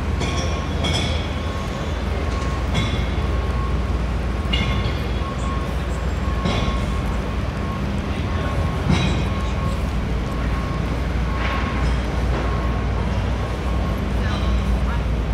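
Busy city street ambience: a steady low rumble of idling and passing motor traffic, with a faint high beep repeating throughout and brief passing sounds of people every second or two.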